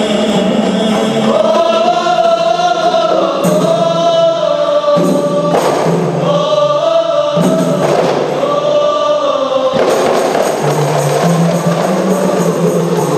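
A qasidah song sung by a group of voices together in long, held phrases, with a few strokes on rebana frame drums between the phrases.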